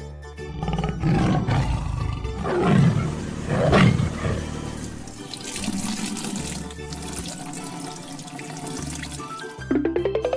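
Cartoon sound effects over children's background music: a tiger roar that swells and glides in pitch in the first few seconds, then a long gushing, hissing spray of liquid as paint pours from a tanker truck's hose. A springy rising boing starts at the very end.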